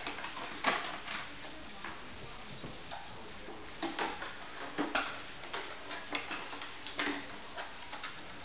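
Irregular light clicks and knocks from a Weimaraner puppy at play on a hardwood floor: its claws tapping the boards and an empty plastic bottle knocking against the floor as it is pushed about. The clicks come in small clusters, busiest about halfway through and again near the end.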